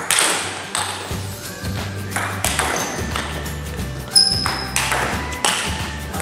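Table tennis rally: the celluloid ball clicks sharply off bats and table about every half second to second, over background music with a low bass line.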